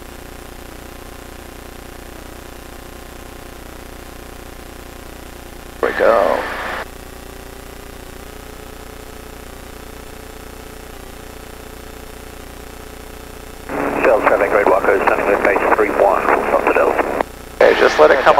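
Light aircraft engine at takeoff power, a steady drone heard through the cockpit headset intercom on the takeoff roll. Brief radio voice transmissions cut in about six seconds in and again for about three seconds near the end.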